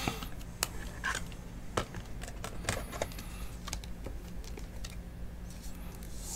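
Faint, irregular clicks and taps of trading cards in stiff plastic holders and sleeves being handled, over a steady low hum.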